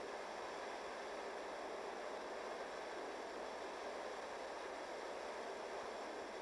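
Steady faint hiss with no other sound: background noise on the documentary soundtrack.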